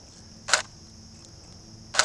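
Camera shutter firing twice, about a second and a half apart, as portrait frames are taken. A faint steady high insect buzz carries on underneath.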